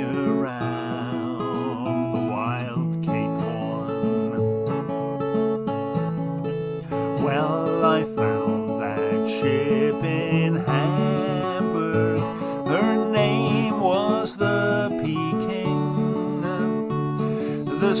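Steel-string acoustic guitar strummed steadily, with a man singing over it in long, wavering phrases.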